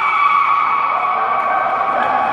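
A loud, steady high-pitched tone with a second tone above it, held without a break, joined by a lower tone about a second in.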